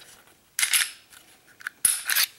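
Smith & Wesson M&P Shield pistol being field-stripped: a short metallic scrape of the slide moving on the frame about half a second in, a few light clicks, then a sharp metal click near the end.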